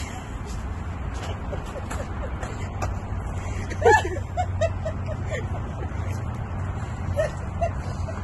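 A sharp high cry about four seconds in, followed by a quick string of short, high yelps and two more near the end, over a steady low hum.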